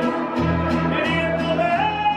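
Live mariachi band playing, with deep bass notes and strummed guitars under violin. A man's voice comes in singing near the end.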